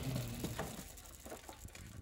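A cardboard box rolling along a metal roller conveyor, the rollers giving scattered light clicks and rattles as it passes, while intro music fades out.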